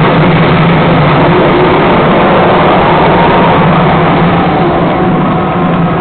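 Loud, steady rumbling energy-blast sound effect in the Dragon Ball Z style, played over the stage PA as the Gogeta performer fires his attack, easing off slightly near the end.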